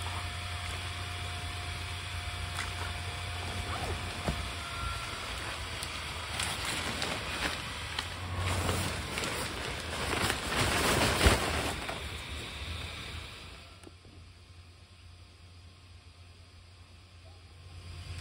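Steady low hum of the inflatable Santa's built-in blower fan, with rustling and handling of the inflatable's fabric that grows louder in the middle as the weighted figure is worked upright. Everything drops much quieter about three-quarters of the way through.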